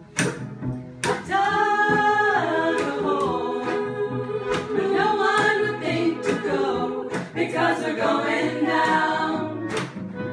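A small group of women singing together, with cello, acoustic guitar and accordion accompanying them. The singing comes in about a second in after a brief dip, and there are occasional sharp knocks.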